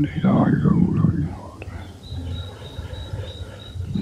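A man speaking on an old, noisy recording for about a second and a half, then hiss with a faint high steady whine.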